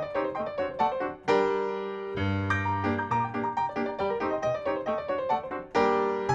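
Solo piano playing a quick run of notes, broken by a loud held chord about a second in and another struck near the end.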